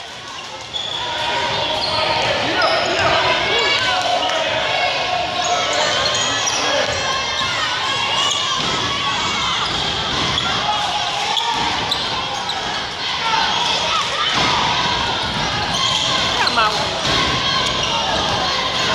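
Basketball game sounds in a gym: the ball dribbling on a hardwood court under constant shouting and chatter from players and spectators.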